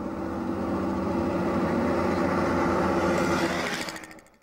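An engine running at a steady pitch, growing slowly louder and then fading away near the end.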